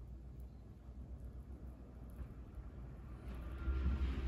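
Quiet room with a low steady hum. A brief, louder scraping noise comes near the end.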